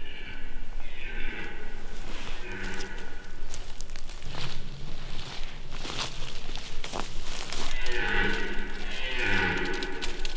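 Red deer stags roaring in the rut: a series of bellowing calls one after another, with a longer, lower one in the middle.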